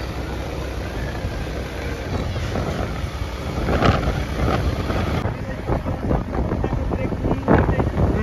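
Wind buffeting the microphone over a steady low rumble of a moving motorbike, with a brief sharp sound about four seconds in.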